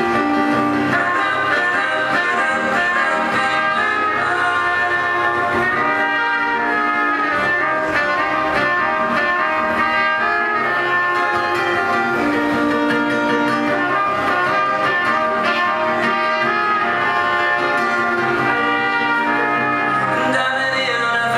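Live band playing an instrumental passage: two trumpets carry a held melody line together over electric and acoustic guitars.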